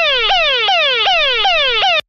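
Police siren sound effect: a siren tone that sweeps sharply downward and jumps back up, nearly three times a second, then cuts off suddenly at the end.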